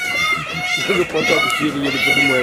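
Many high-pitched voices calling and shrieking over one another, a new call about every half second, with a person's lower voice talking underneath.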